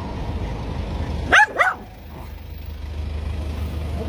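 A dog barking twice in quick succession about a second and a half in, two short loud barks, over a steady low background rumble.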